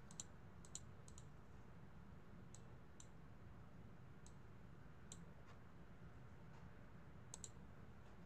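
Faint computer mouse clicks, scattered and a few in quick pairs, over near-silent room tone.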